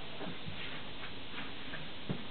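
Room tone: a steady background hiss with a few faint light ticks.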